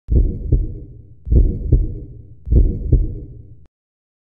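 Heartbeat sound effect: three loud, low double thumps, about a second and a fifth apart, cutting off suddenly near the end.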